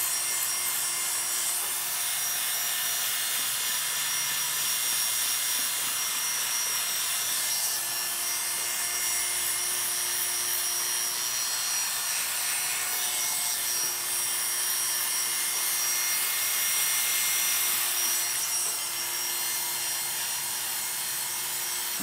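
Oster Classic 76 barber's hair clipper running steadily with a hum and hiss as its blade cuts hair, pushed up the back of the head against the grain.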